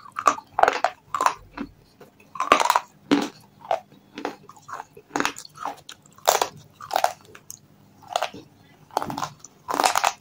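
Chips of red shale stone coated in paste being bitten and chewed: a run of sharp, dry crunches, about two a second at uneven spacing.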